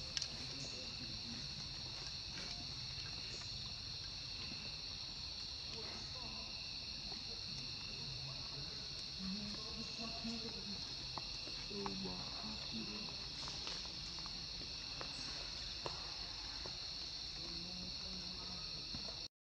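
Steady high-pitched drone of forest insects.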